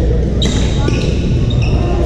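A sharp hit from play about half a second in, and short sneaker squeaks on the hardwood gym floor, over the steady din of voices and other games in a large echoing hall.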